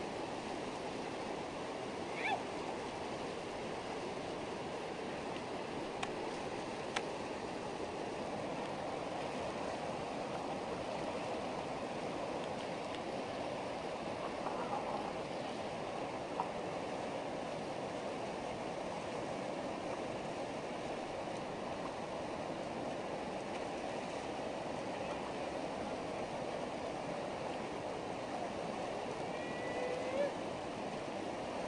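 Whitewater rapid rushing steadily, an even unbroken noise, with a few faint brief clicks and calls over it.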